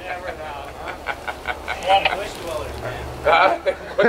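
Indistinct voices talking, over a low steady hum.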